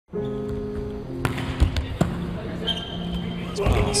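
Sharp slaps of a volleyball being bounced and struck, four of them close together in the second second and more near the end, over steady arena music.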